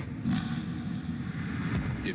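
Low, steady rumble of city traffic in a 1990s TV commercial's soundtrack.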